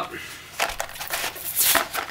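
Plastic blister packaging and its cardboard backing crackling and crinkling in the hands as the pack is gripped and pried open, in a run of irregular crackles and scrapes.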